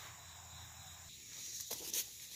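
Faint, steady high chirring of insects in the garden, with a few light rustles near the end.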